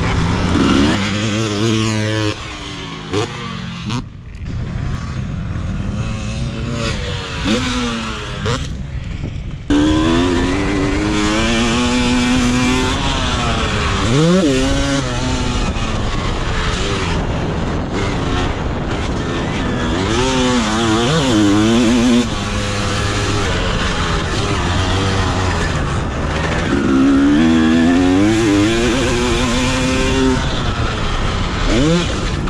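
1999 Honda CR250R's two-stroke single-cylinder engine revving up and down repeatedly. It runs quieter and lighter for several seconds early on, then comes back in loud at once about ten seconds in and keeps rising and falling in pitch.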